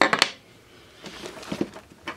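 A kubotan set down on a wooden tabletop: a few quick sharp clicks right at the start. Then soft rustling and faint knocks as a fabric kit pouch is picked up and turned over.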